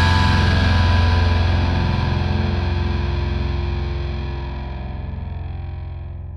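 A distorted electric guitar chord held over a low bass note rings out and slowly fades, the final sustained chord of a hardcore punk song. The high end dies away first, leaving the low bass droning.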